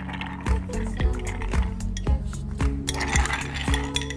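Ice clinking against the inside of a cut-glass mixing glass as a bar spoon stirs a gin and lime cordial drink to chill and dilute it. The clinks thicken about three seconds in, over background music with a steady beat.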